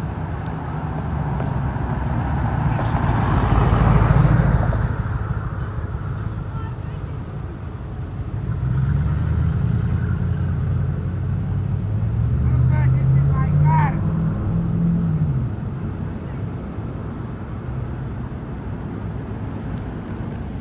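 Motor vehicles in a parking lot: one passes by, loudest about four seconds in, then an engine's pitch rises and falls for several seconds as a vehicle pulls away and moves off.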